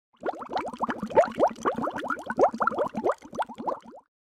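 Bubbling water sound effect: a quick, overlapping run of short rising bubble plops that cuts off suddenly at the end.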